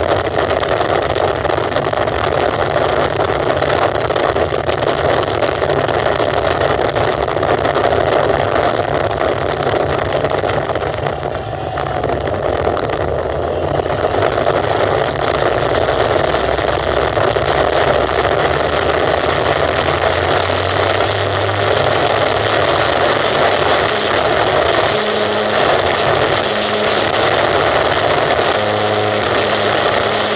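Electric model airplane's E-flite Power 90 brushless motor and 17×10 propeller running steadily under power, heard from an onboard camera with wind rushing over the microphone as the plane takes off from grass and climbs into a bank.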